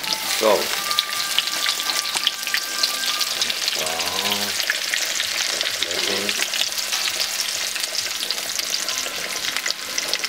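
Breaded minced-meat cutlets and sliced onion sizzling and crackling steadily in hot oil in a frying pan, with a wooden spatula scraping and pushing through the pan.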